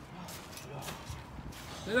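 Faint footsteps and rustling on a plastic tarp, a few soft separate knocks over low outdoor background noise.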